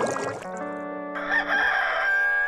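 A cartoon bubbling whoosh of a bubble scene transition, then, about a second in, a loud sustained rooster crow from a cartoon clam, the morning wake-up call.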